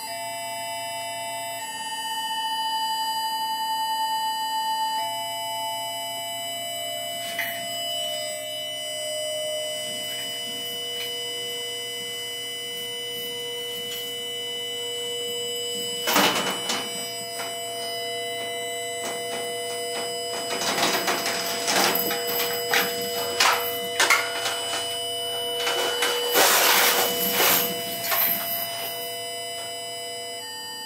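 Free-improvised music: steady electronic sine-like tones held at several pitches, shifting now and then. From about halfway, irregular noisy clattering percussion sounds join in, thickest near the end.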